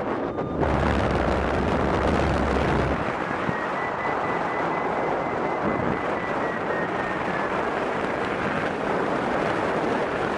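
Airflow rushing over the microphone during paraglider flight, a steady wind noise with heavier low buffeting in the first few seconds. A faint high steady tone sounds from about three and a half seconds in and fades out about four seconds later.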